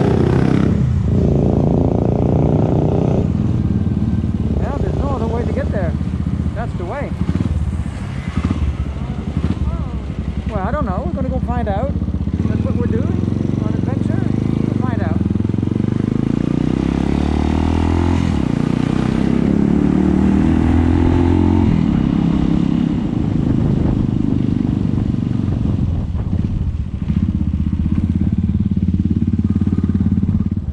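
Suzuki Thunder 250 motorcycle engine running under way on the road, its pitch rising and falling as it accelerates and shifts gears, with steady wind and road noise.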